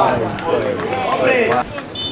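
Men's voices shouting and calling out at a football match, with a brief sharp knock about one and a half seconds in.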